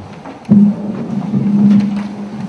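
A handheld microphone picked up and switched on: a sudden thump about half a second in, then a steady low hum through the room's sound system.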